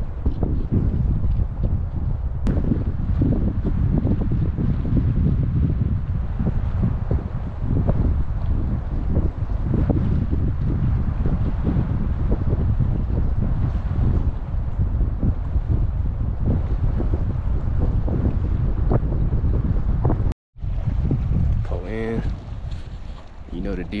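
Strong wind buffeting the microphone: a dense, low, gusting rumble that cuts out for an instant near the end.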